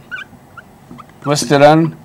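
Faint squeaks of a marker on a whiteboard while writing, then a man's voice speaking a word about a second and a half in.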